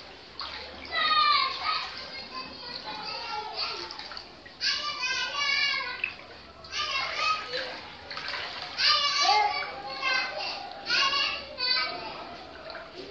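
High-pitched children's voices calling out and chattering in bursts of a second or so.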